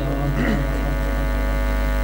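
Steady electrical hum and buzz from the sound system, a low drone with a thin buzzy edge that holds unchanged.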